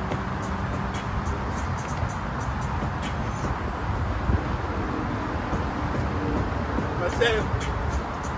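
Steady outdoor background noise, mostly a low rumble, with faint voices in it and a short rising sound about seven seconds in.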